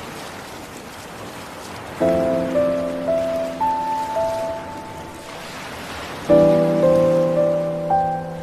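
Background score of piano chords and single notes entering about two seconds in and again with a louder chord near six seconds, each dying away, over a steady wash of sea surf.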